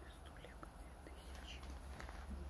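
Faint, indistinct voice, close to a whisper, over a low steady hum.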